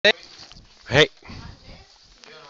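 A person's single short, loud shout of "hey!" about a second in, just after a brief sharp sound at the very start.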